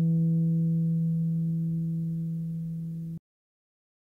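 A low classical guitar note ringing on and slowly fading. It stops abruptly a little after three seconds in.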